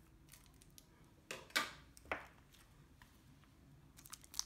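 Faint handling of a tarot deck's cellophane shrink wrap as the seal is worked open: a few short crinkles and clicks, the loudest about one and a half seconds in.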